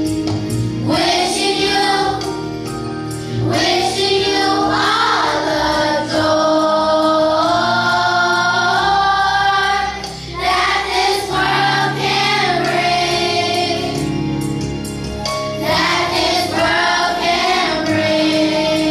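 Children's choir singing in long held phrases, with a short break between phrases about ten seconds in.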